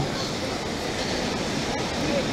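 Ocean surf on the beach: a steady wash of breaking waves.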